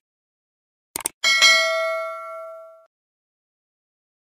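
Two quick mouse-style clicks about a second in, then a bright bell ding that rings out and fades away over about a second and a half: the click-and-bell sound effect of a subscribe button animation.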